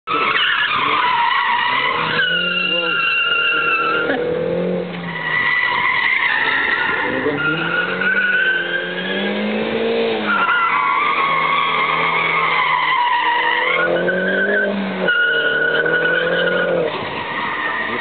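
MINI hatchback cornering hard, tyres squealing in repeated stretches of a few seconds, while the engine note rises and falls between the corners.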